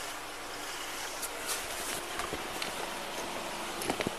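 Steady outdoor background noise picked up by a body-worn camera's microphone, with a few faint clicks and a sharper click near the end.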